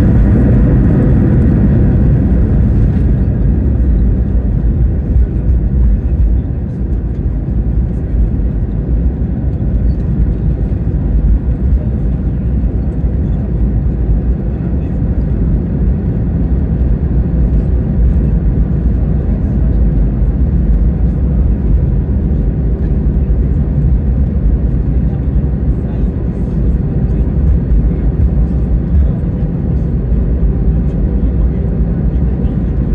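Airbus A320 cabin noise during landing rollout and taxi: a steady, loud low rumble from the CFM56 engines and the wheels on the runway. A brighter rushing noise on top fades away in the first three seconds or so.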